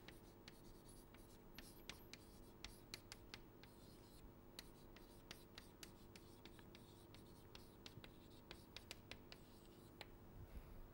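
Chalk writing on a blackboard, faint: an irregular string of small taps and scratches as the chalk forms letters.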